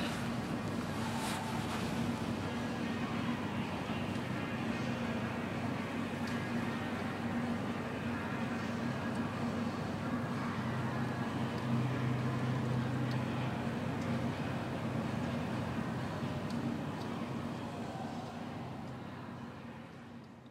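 Outdoor ambience with a steady low engine hum that grows louder about halfway through, then fades out near the end.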